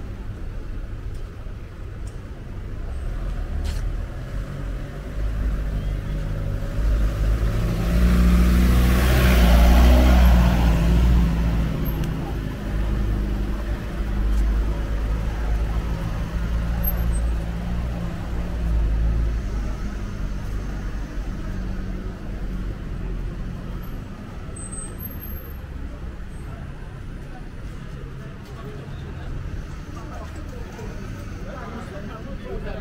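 City street traffic: car engines running at low speed with a steady low rumble, one vehicle passing close about eight to eleven seconds in, the loudest moment.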